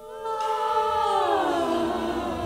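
Choir of voices holding a chord, then sliding down in pitch together from about a second in and settling on a lower chord.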